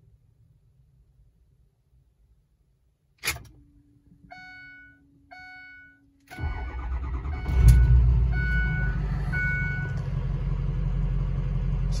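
Ford 6.0 Power Stroke V8 diesel restarted hot. After a click, a steady hum and a chime that sounds twice, it cranks for about a second and fires up around seven and a half seconds in, then settles into a steady idle while the chime sounds a few more times. The hot restart shows the high-pressure oil system now builds enough injection control pressure to start, curing the hot no-start.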